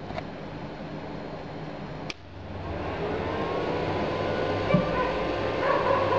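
Tajima TFD-II loader switched on: a sharp click about two seconds in, then a steady machine hum that grows louder with a faint whine rising in pitch as it spins up. A short beep near the end comes as its self-test completes.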